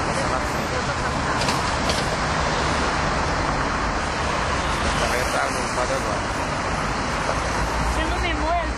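Steady city road traffic noise: cars driving through a street intersection, with faint voices in the background.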